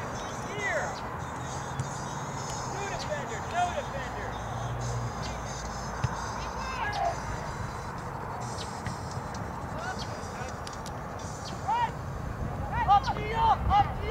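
Scattered shouts and calls from players and spectators at an outdoor soccer game over steady outdoor background noise, growing louder and more frequent near the end.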